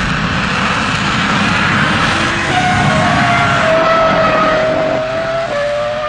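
A Eurofighter Typhoon's twin turbofan engines and a Ferrari Formula One car accelerating flat out from a standing start: a loud, steady roar, with a whine that comes in about two and a half seconds in and falls slightly in pitch.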